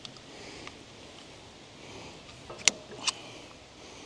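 Two sharp metallic clicks, under half a second apart and about two and a half seconds in, from a hydraulic hose's Pioneer-to-flat-face quick-coupler adapter being handled and fitted, over a faint steady background hiss.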